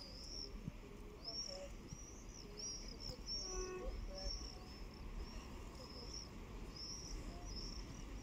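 Small birds chirping repeatedly in quick, short high notes over a steady low rumble.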